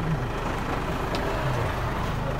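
Minibus engine running, heard from inside the passenger cabin as a steady low hum with a wash of cabin noise.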